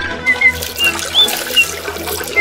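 Commercial soundtrack: sustained background music with several short, high chirping sound effects and watery, splashy noises.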